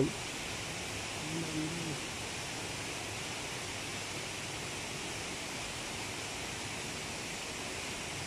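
Steady outdoor background hiss with no clear single source, and a faint, short low tone about a second and a half in.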